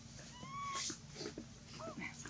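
Macaque giving a soft, thin coo call: one note that glides up and levels off for about half a second, then a shorter one near the end.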